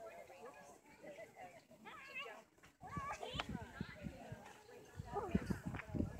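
Faint distant voices, with a quavering animal call about two seconds in. From about halfway, low rumbling knocks on the microphone grow louder toward the end.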